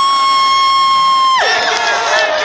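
One long, steady, high-pitched blast with a buzzy tone, which cuts off about a second and a half in; crowd voices and shouting come back after it.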